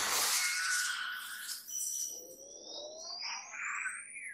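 Anime sound effects from the episode: a loud burst of noise that fades over about two seconds. It is followed by rising whistling tones as the Nine-Tailed Fox gathers a dark energy ball in its mouth.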